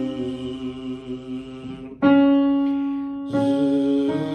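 A man hums a buzzing, bumblebee-like tone on a held pitch as a vocal warm-up, with digital piano notes giving the reference pitches. About halfway through, a single piano note is struck and fades, and the hummed buzz comes back shortly before the end.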